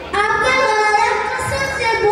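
A child singing into a handheld microphone, amplified through a PA, starting suddenly just after the start with notes held out in turn.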